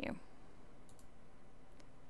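Faint computer mouse clicks: two close together about a second in and one more near the end, over low room hiss.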